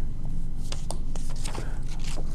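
Irregular light clicks and scraping from handling objects in a classroom, starting about half a second in, over a steady low electrical hum.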